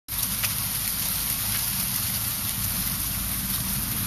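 Freezing rain and ice pellets falling, a steady pattering hiss with a few faint ticks, over a steady low rumble.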